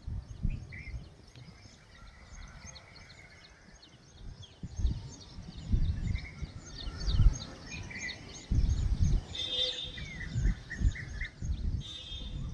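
Small birds chirping over and over in short, high calls, with irregular low rumbling bursts on the microphone from about four seconds in.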